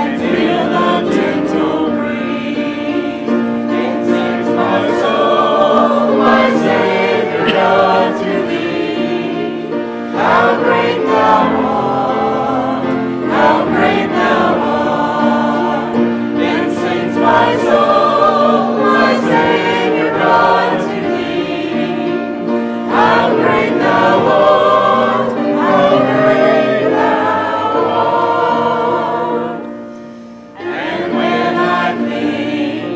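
A church congregation and choir singing a hymn together, many voices in sustained, held notes.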